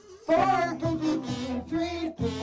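Several kazoos hummed together, a loud buzzy tune that breaks in after a brief pause about a third of a second in and moves through short notes.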